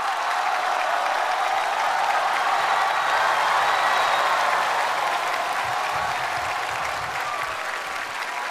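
Large audience applauding and cheering, a dense steady wash of clapping that swells in the middle and eases off near the end, greeting a comedian walking on stage.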